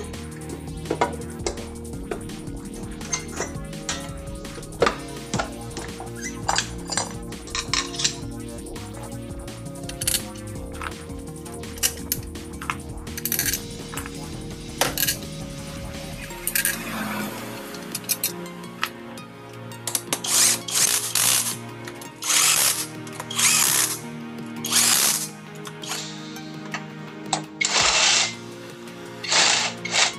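Background music with small tool clicks, then from about halfway in, about eight short bursts of a power tool running in the bolts of a Honda Beat scooter's CVT cover during reassembly.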